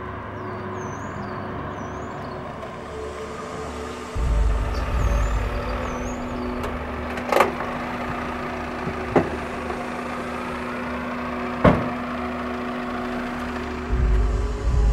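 Toyota Camry sedan running, a low steady engine rumble that grows louder about four seconds in as the car pulls up, with three sharp clunks a couple of seconds apart.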